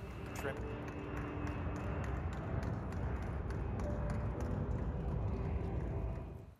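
Jet engines of the twin-fuselage carrier aircraft running as it climbs away with the spaceplane underneath, a steady roar that cuts off near the end.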